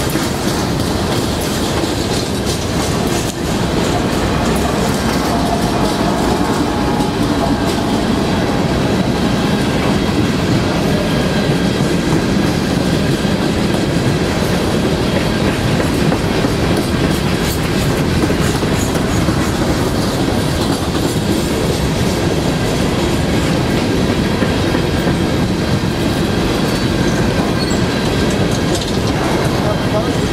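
Freight train of open-top hopper cars rolling past close by: a steady rumble of steel wheels on rail, with a continuous run of clicks and clacks from the wheels passing over the rail joints.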